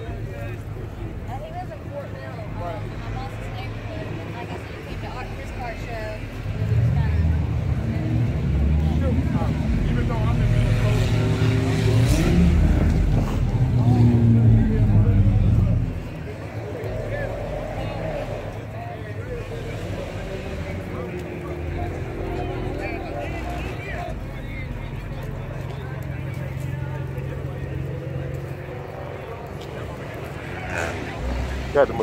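A car engine running loudly for about ten seconds, its pitch climbing and then falling as it is revved, then dropping away suddenly; people chatter around it.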